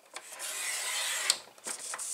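Stampin' Up! paper trimmer's blade carriage slid along its rail, cutting through a sheet of patterned paper: a scraping hiss of about a second that ends in a sharp click, with a couple of lighter clicks around it.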